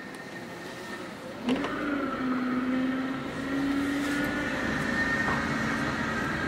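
Mazda Protegé's four-cylinder engine pulling away and accelerating, heard from inside the car. It is quiet at first, then about a second and a half in the engine note rises and holds fairly steady, with small steps in pitch.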